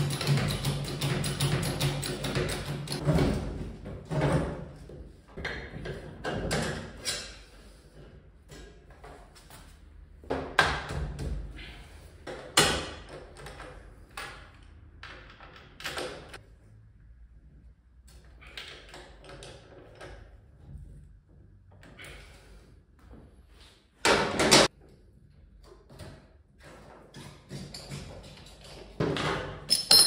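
Intermittent clinks, knocks and rattles of hand tools and parts as a Honda PCX 125 scooter engine is put back together, with louder sharp knocks about twelve seconds in and again near twenty-four seconds.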